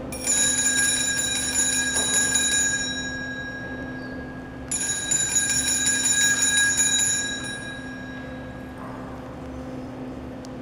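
Altar bells rung in two bouts as the Blessed Sacrament is raised in blessing. Each bout is a cluster of bright ringing tones that lasts about three seconds and then fades; the second starts about four and a half seconds in.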